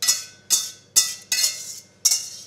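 Fork knocking against the rim of a stainless steel mixing bowl to shake out the last beaten egg: four sharp metallic clinks about half a second apart, each ringing briefly.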